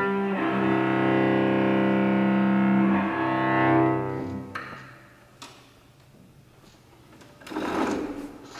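Bowed cello holding long, steady notes that die away about halfway through. After that it goes quieter, with a small knock and, near the end, a short shuffling noise.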